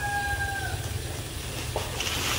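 A rooster's crow ending on a held note that fades out under a second in, over a steady low rumble.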